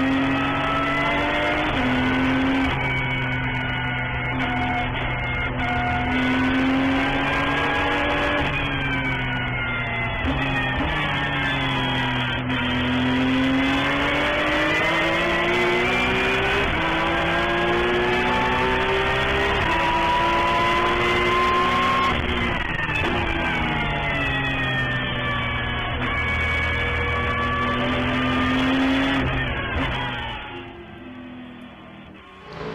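Porsche 911 GT3 Cup's flat-six racing engine heard from inside the cockpit at speed. Its pitch climbs steadily and drops sharply several times as it runs through the gears.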